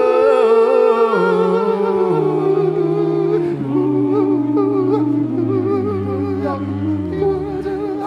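Male voices singing a cappella in close harmony, holding chords while the lowest voice steps down in pitch.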